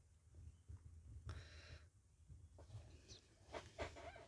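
Near silence: room tone with a low hum and a faint rustle a little over a second in.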